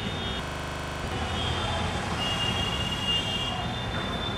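Outdoor background noise with a steady low rumble. A thin high tone comes in through the middle and fades out before the end.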